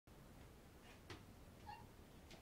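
Domestic cat giving a single faint, short, high-pitched meow near the end, after a soft tap about a second in.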